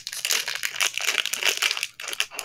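Plastic wrapping on a blind-box toy egg being torn and unwrapped by hand: a dense run of rapid, irregular crackles with a brief pause near the end.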